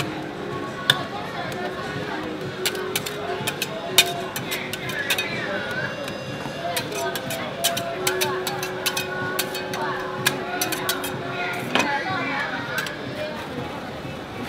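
Metal spatulas clicking and scraping on the steel cold plate of a rolled-ice-cream pan as ice cream is chopped and spread thin, with many sharp irregular clicks. Background voices and music underneath.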